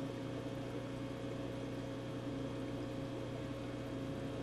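Steady low hum of room tone with a faint even hiss, unchanging, with no distinct events.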